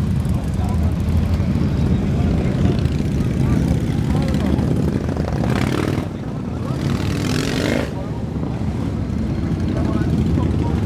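Motorcycle engine running at idle with a steady low rumble, under background voices. About halfway through, a rush of noise swells over it for a couple of seconds and then falls away.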